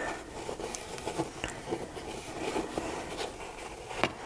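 Graphite pencil scribbling loops on acrylic-painted paper: a quiet, irregular scratching with small clicks.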